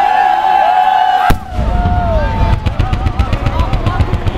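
Display fireworks: wavering whistles through the first second, then one sharp, very loud bang just over a second in. From about two and a half seconds a low rumble with a rapid string of cracks follows as a burst of white comets goes up.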